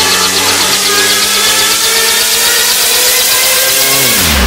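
Electronic dance music track playing, an instrumental stretch with steady sustained synth tones.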